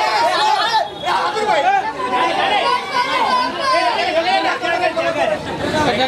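Crowd chatter: many voices talking and calling over one another at once.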